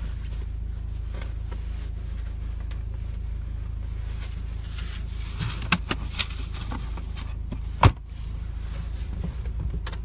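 Steady low rumble of a car's idling engine heard from inside the cabin. A few sharp clicks or knocks come over it in the second half, the loudest about eight seconds in.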